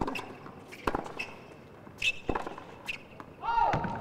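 A tennis serve and a short rally: sharp knocks of the ball being struck by rackets and bouncing on a hard court, about six in all. Near the end comes a short, high-pitched vocal cry.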